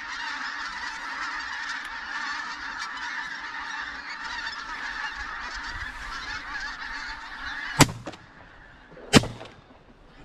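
A large skein of pink-footed geese calling overhead in a dense, continuous chorus of honks. Near the end, two shotgun shots about a second and a half apart are the loudest sounds, and the calling mostly stops after them.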